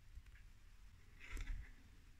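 Faint handling sounds of hands working yarn with a metal crochet hook: a few light clicks and a brief rustle a little past halfway.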